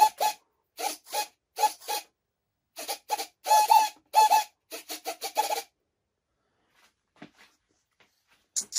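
Small RC servos in a model plane buzzing in short bursts, about two or three a second, as the control surfaces are driven back and forth. The elevator is moving the wrong way for the input. The bursts stop about two thirds of the way through, leaving only a couple of faint ticks.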